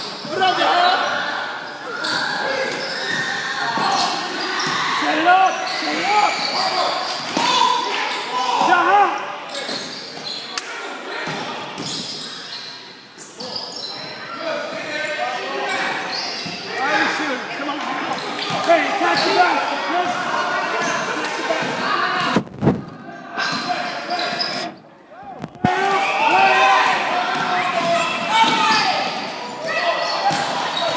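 Basketball being dribbled and bouncing on a hardwood gym floor during play, with players and coaches calling out, all echoing in a large hall. The sound briefly drops out twice about three-quarters of the way through.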